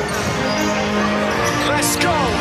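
A basketball bouncing on a hard court floor, under music and voices.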